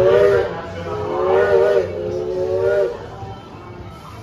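A whistle sounding a chord of several tones in three short blasts, each under a second long, with a slight waver in pitch.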